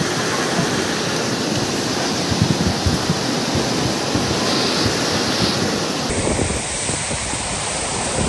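Muddy floodwater of a river in spate rushing, a loud steady wash of water noise. About six seconds in the sound changes abruptly to a duller, less bright rush of water.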